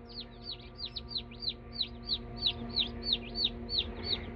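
Day-old Buff Orpington chicks peeping continuously, a rapid string of short, high peeps about five a second, over a faint steady low hum.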